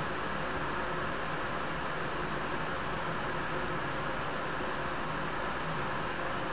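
Steady, even background hiss with no distinct sound events: room tone and microphone noise.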